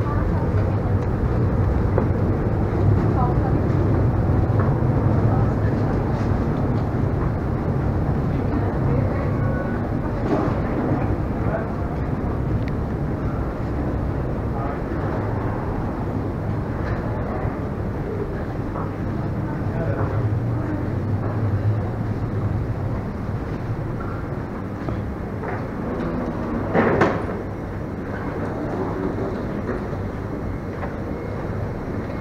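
Steady low rumbling hum of a busy airport terminal walkway, with faint voices of people around. A brief louder voice-like sound stands out near the end.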